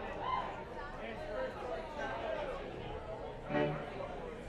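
Indistinct crowd chatter at a low level, with one voice calling out briefly near the end.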